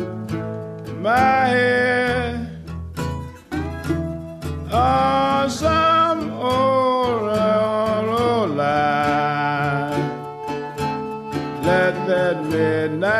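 Acoustic blues recording: a man singing a slow melody with bending, wavering notes over acoustic guitar.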